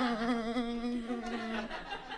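A man's voice holding one long sung note with a slight waver in pitch, trailing off near the end.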